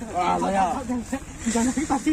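Speech: voices talking, with no other sound standing out.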